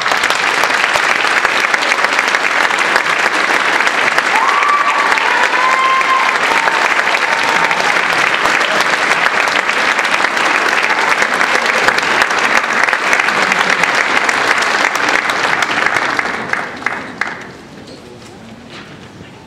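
Audience applauding steadily, the clapping dying away near the end.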